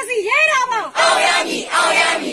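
Protest crowd chanting slogans: a single voice calls out a line, then the crowd shouts back together in two short bursts.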